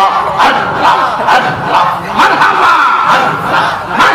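Jalali zikr: many men chanting together forcefully in a loud, dense mass of voices, led through microphones.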